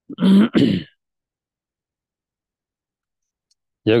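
A man clearing his throat, two quick rasps in the first second.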